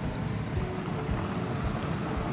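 A thick curry boiling hard in a covered nonstick frying pan: steady, dense bubbling and popping.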